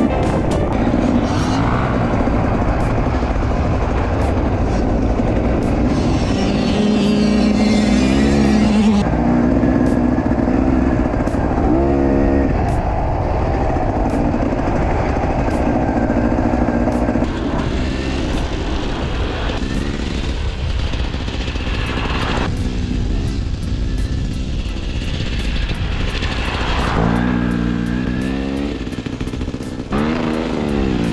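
Beta 300 RR two-stroke enduro engine revving up and down as the bike is ridden, its pitch rising and falling with each burst of throttle, with wind noise on the on-board microphone.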